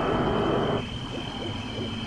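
Spooky night sound effect of an owl hooting: a held hoot that stops just under a second in, followed by quieter short calls over a steady high tone.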